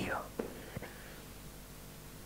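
The end of a man's spoken phrase fading out in the hall's reverberation, two faint clicks, then quiet room tone with a low steady hum.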